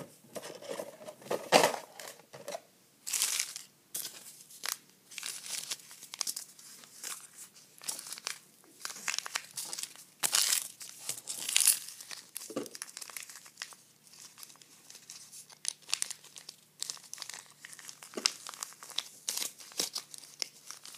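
Small premixed saline packets crinkled and rustled between the fingers, in irregular crackly bursts with brief pauses, loudest about a second and a half in and again around ten to twelve seconds in.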